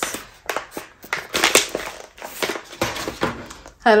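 Thin clear plastic packet crinkling and crackling in the hands as it is opened and a roll of washi tape is taken out, in a run of irregular sharp crackles.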